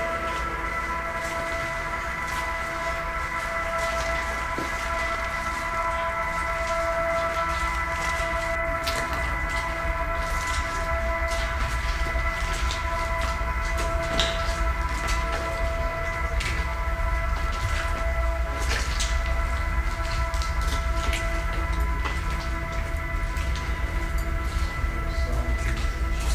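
A steady, unbroken pitched drone with several overtones over a low rumble, with scattered faint clicks.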